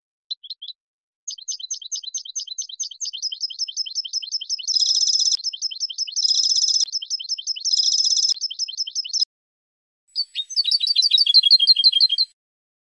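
European goldfinch singing: a long run of rapid, high twittering notes with three louder trilled passages in the middle, a brief pause, then another twittering phrase near the end.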